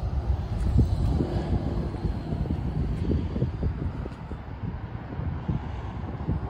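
Wind buffeting the microphone outdoors: an uneven low rumble that rises and falls throughout.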